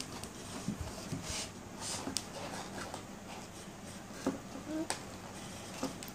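Paper and cardboard handling: soft rustles and light clicks as books and sheets are moved about inside a cardboard box.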